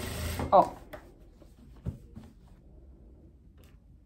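Jack industrial sewing machine stitching briefly and stopping about half a second in, then quiet handling of the linen fabric with a faint click a couple of seconds in.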